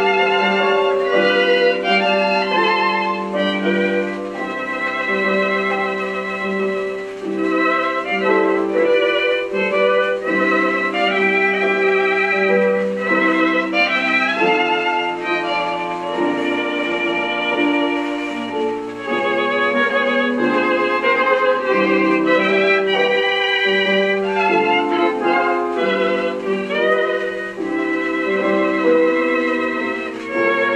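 Violin music from a 78 rpm (SP) shellac record, played through small ALTEC 12 cm full-range drivers in cat-food tin enclosures driven by a valve amplifier and picked up by microphones in the room. The sound has a narrow range, with no deep bass and little top end.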